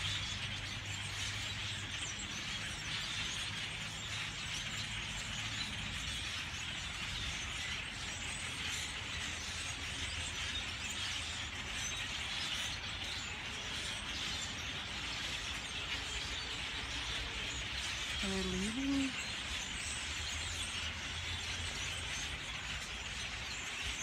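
A large flock of birds calling all at once from the trees, a dense, steady chatter with no pauses.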